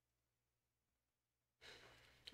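Near silence, then near the end a person's breathy exhale begins, like a sigh or the start of a soft laugh.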